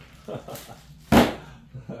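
A single sharp knock about a second in, among a few brief words.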